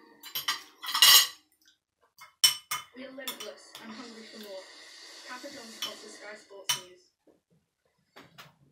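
Cutlery clinking and scraping against ceramic plates and bowls: a handful of sharp clinks, the loudest clatter about a second in and the last shortly before the end.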